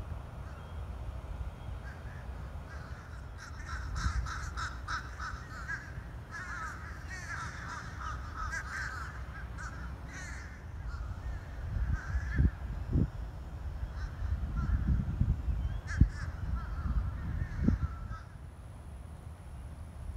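Birds calling in a quick run of repeated, rough calls from about three to eleven seconds in, with fainter calls later on. In the second half, low thumps and rumbling on the microphone are the loudest sounds.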